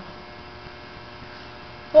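Steady electrical mains hum picked up through the microphone and sound system; a woman's voice comes in right at the end.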